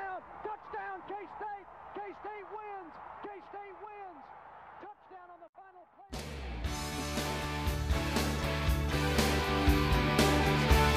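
Excited shouting in repeated, rising-and-falling calls, fading out by about five seconds in. About six seconds in, rock music with guitar and drums starts abruptly and runs on loudly.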